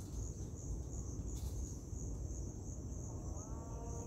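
An insect's steady, high-pitched trill pulsing about three times a second, over a low rumble. A faint, drawn-out pitched call sets in near the end.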